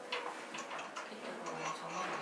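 A series of light, irregularly spaced clicks and ticks.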